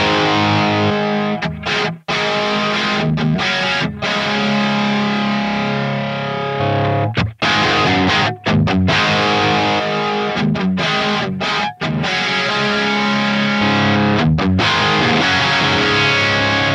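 Distorted electric guitar riff played through Line 6 Helix amp and cab modelling, with two cab blocks hard-panned left and right. The riff is heard twice, first with the short delay on one cab switched off and then with it on, which widens the stereo sound.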